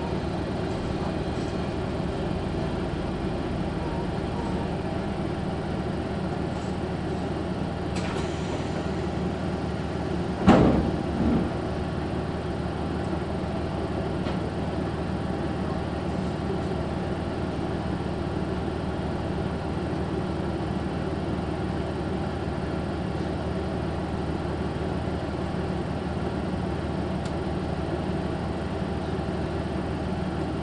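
KiHa 185 series diesel railcar heard from inside the carriage, its engine droning steadily as the train draws to a stop and stands at a station. About ten seconds in, one sharp loud knock, followed closely by a smaller one.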